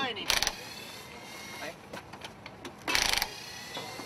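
Cordless impact wrench on a rally car's wheel nuts, running in two short bursts about three seconds apart.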